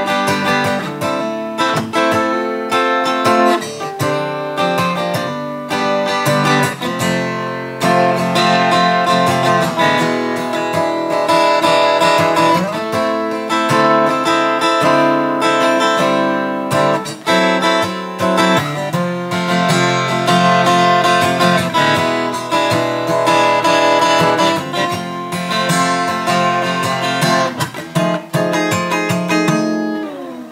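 Taylor 214ce-K DLX Grand Auditorium acoustic guitar, solid Sitka spruce top with koa back and sides, strummed through a continuous run of chords. The tone is crisp and ringing.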